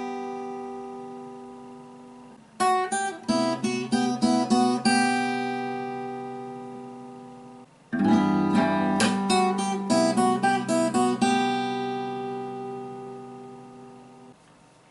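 Acoustic guitar played fingerstyle. A chord rings on and fades, then a quick phrase of plucked notes over a bass note starts about two and a half seconds in, and a second one about eight seconds in; each is left to ring out and fade.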